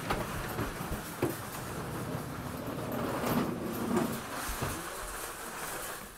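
Metal wire-mesh roll cage rattling and rolling as it is handled and pushed, with a couple of sharp knocks about a second in.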